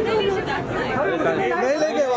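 Several people talking over one another: overlapping chatter and calls from a close crowd.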